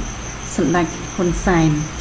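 A person speaking Khmer in two short phrases, with a thin steady high-pitched whine underneath.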